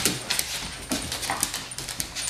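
Dogs playing rough with a person on a hard floor: scuffling with repeated sharp clicks and knocks, and a short dog whine about a second and a half in.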